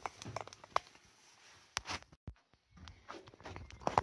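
Footsteps and scattered knocks and clicks of someone climbing a narrow church tower staircase, with a brief break in the sound about two seconds in.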